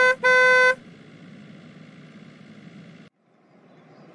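Car horn honking twice: a very short toot, then a longer toot of about half a second. Faint steady background noise follows and cuts off abruptly about three seconds in.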